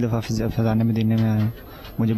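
Speech only: a man's voice talking, pausing briefly near the end.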